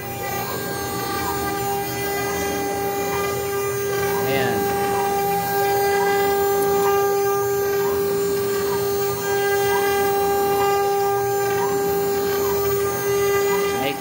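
CNC router spindle running with a steady high whine while a 2 mm ball-nose bit cuts a finishing pass in a wooden board. A fainter motor tone rises and falls about once a second as the machine reverses at the end of each raster pass.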